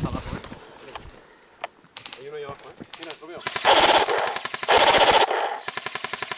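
Airsoft rifle firing full-auto: a long burst about three and a half seconds in, a second short burst right after it, and another rapid run of shots starting near the end.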